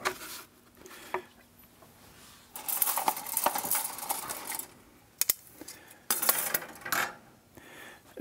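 Light clattering and rattling of wooden go-bar sticks and a caul being handled on a go-bar deck, in two spells of a second or two, with a few sharp clicks of wood set against wood.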